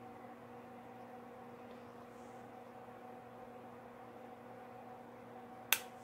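Steady low electrical hum over faint room noise, with one sharp click near the end.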